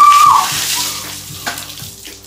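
A bucket of ice water pouring over a person and splashing onto the paving, loudest at the start and dying away over about a second and a half. A high shriek ends about half a second in. Background music plays throughout.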